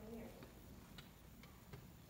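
Near silence: quiet room tone in an auditorium, with a few faint, unevenly spaced clicks.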